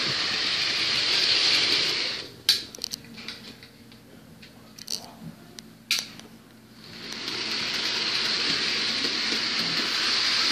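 A Bachmann Thomas model train's electric motor and wheels running on the track as a steady high whir. It stops a little past two seconds in, a few sharp clicks follow, and it starts running again about seven seconds in.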